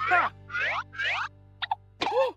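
Cartoon soundtrack: three quick falling swoops of sound in the first second, then two short high blips, over a faint steady music bed.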